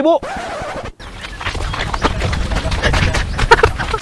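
After a brief hiss of noise that cuts off sharply, water splashing and sloshing with many short clicks as it is scooped out of a pond by hand with plastic dippers, with chickens clucking.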